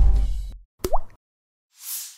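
Animation sound effects: a deep boom fading out over the first half second, a short blip sliding upward in pitch about a second in, then a soft whoosh near the end.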